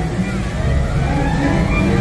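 A loud, low rumbling sound effect played over an outdoor show's speakers, in a break between stretches of music.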